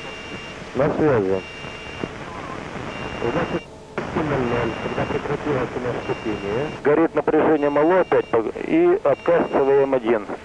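An electronic alarm beeping in a steady on-off pattern: short high tones about half a second long, roughly one every second and a half. Men's voices talk over it, loudest in the last three seconds.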